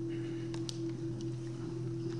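A steady low hum of held tones with a few faint clicks.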